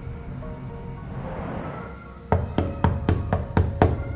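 Fist knocking hard on a wooden door: about seven quick knocks, roughly four a second, starting a little past halfway, over steady background music.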